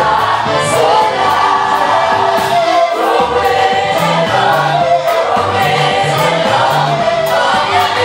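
Live gospel praise band playing an upbeat sebene: several voices singing together over electronic keyboard, drum kit and bass, with steady, regular cymbal strokes.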